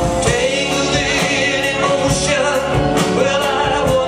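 Live pop-rock band playing a song: a male lead voice sings over electric guitars, bass, keyboards and drums.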